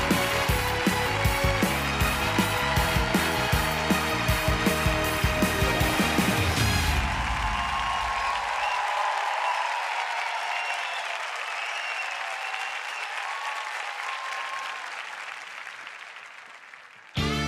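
Show music with a steady beat stops about seven seconds in, and studio audience applause follows, slowly dying down.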